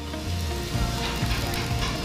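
Electric arc welding: the welding arc gives a steady, dense hiss, with background music underneath.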